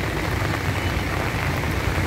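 Steady rain with road traffic on a wet road: an even hiss over a constant low engine rumble.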